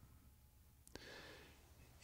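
Near silence in a pause between sentences of a man's talk, with a faint click about a second in and a faint intake of breath after it.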